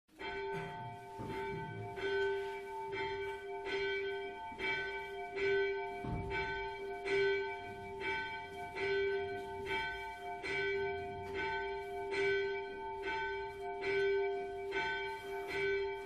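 Church bells ringing in a steady repeating pattern, several bells of different pitch sounding together, with a strike roughly every 0.8 s and the tones ringing on between strikes.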